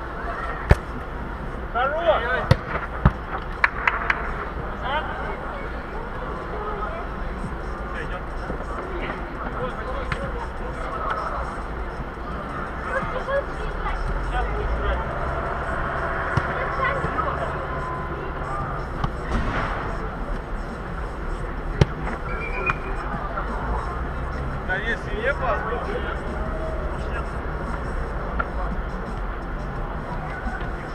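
Football players' shouts and calls echoing in a large indoor football hall, with sharp ball kicks that ring out, several in the first few seconds and one more a little past the middle. A steady low hum runs underneath.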